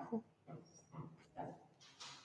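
Mostly quiet, with a few faint, brief rustles of a paperback book's pages being leafed through.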